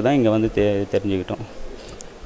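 A man speaking with some drawn-out, held syllables, trailing off into a pause a little past halfway through.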